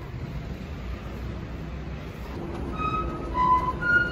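Steady low rumble of a monorail station, then from about two and a half seconds in a run of short electronic chime notes at different pitches: the platform's arrival chime for an incoming monorail train.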